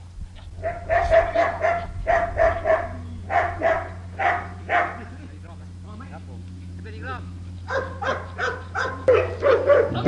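Dog barking in a quick run of short, repeated yaps for several seconds, then a second run of barks near the end.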